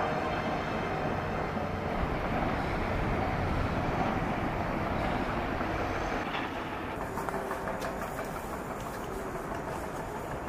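Steady outdoor background noise, a rumbling hiss with no pitch to it; about seven seconds in, a run of faint light clicks joins it.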